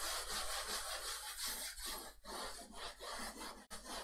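Chalkboard eraser wiping a blackboard in repeated strokes: a rough rubbing hiss with brief breaks between strokes.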